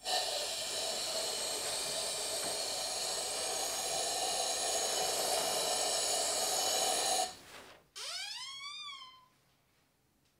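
Powder coating gun hissing steadily with compressed air as it sprays red powder onto the jack's steel grip, then cutting off. About a second later comes a short squeal that rises and then falls in pitch.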